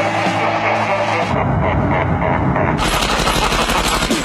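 Rapid automatic gunfire from a film soundtrack, heaviest near the end, over background music.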